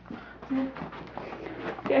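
Mostly quiet room sound, with a short murmured voice about half a second in and a few faint clicks, then a spoken "okay" right at the end.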